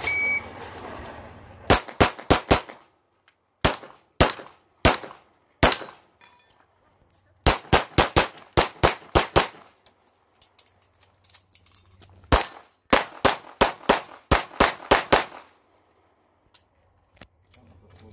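A shot timer's short electronic start beep, then a CZ SP-01 Shadow 9mm pistol firing about two dozen rapid shots in four bursts, mostly in quick pairs, with pauses of a second or more between bursts.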